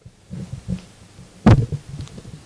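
Handling noise of a handheld microphone as it is passed from one person to another: soft low thuds and rubbing, with one loud knock on the mic body about a second and a half in.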